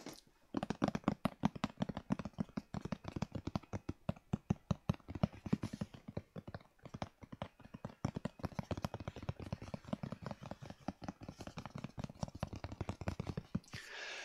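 Fingers tapping and scratching on a flat, lidded Chanel cardboard presentation box as ASMR: a fast, irregular patter of light taps with a couple of brief pauses.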